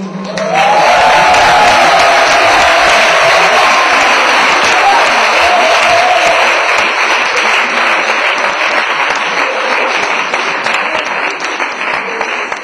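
Audience applauding, starting about half a second in and easing off slightly near the end.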